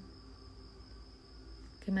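Crickets trilling steadily, a thin high-pitched sound behind a quiet room with a faint low hum; a woman's voice starts again near the end.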